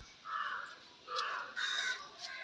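A crow cawing three times, harsh calls of about half a second each, the last two close together.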